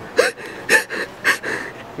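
Breathy, gasping laughter from a person: four short bursts of breath about half a second apart.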